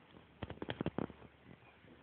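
A newborn foal's legs scrabbling and knocking against the ground as it struggles to get up: a quick flurry of sharp knocks and scuffs lasting about half a second, starting about half a second in.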